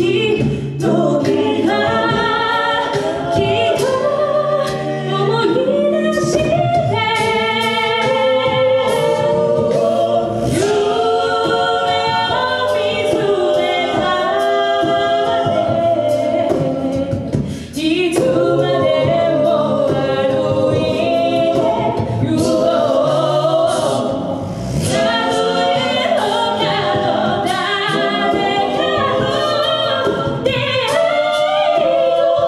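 A cappella group of mixed men's and women's voices singing a ballad through stage microphones: a lead melody over sung harmony backing and a low bass line, with regular short sharp clicks marking the beat.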